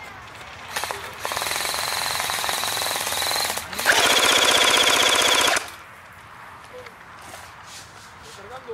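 Airsoft rifle fire in two long full-auto bursts, each about two seconds, the second louder and closer, with a high steady whine running through each.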